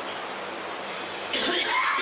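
A man coughing into his hand, a sudden harsh cough starting about one and a half seconds in.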